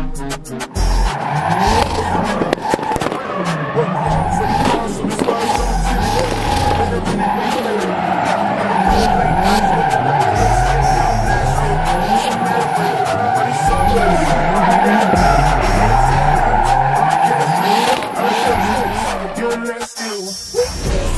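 Drift car's tyres squealing steadily through a long slide while its engine revs up and down over and over, with a hip-hop music track underneath.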